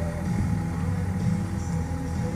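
Steady road and engine noise inside a moving car's cabin, with music playing underneath.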